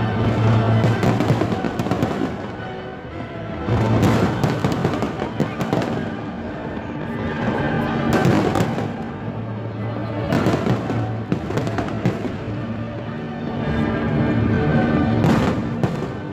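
Aerial fireworks bursting and crackling in repeated waves of dense volleys, loudest about four, eight, ten and fifteen seconds in, with music playing underneath.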